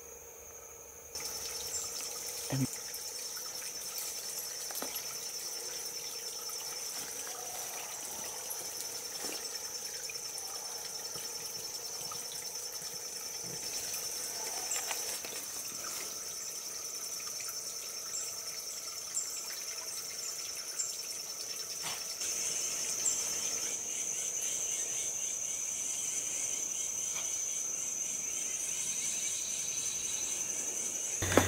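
Steady, high-pitched drone of an insect chorus, cutting in suddenly about a second in, with a few scattered light clicks.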